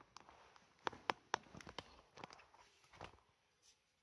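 Footsteps: a run of faint, irregular knocks between about one and three seconds in.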